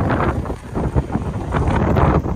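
Wind buffeting the iPhone's built-in microphone, a rough rumble that surges and drops in uneven gusts.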